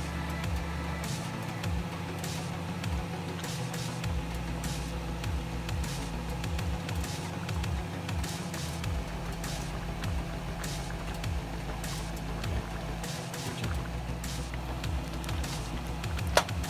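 Background music with a steady bass line that shifts every few seconds, with scattered short clicks over it.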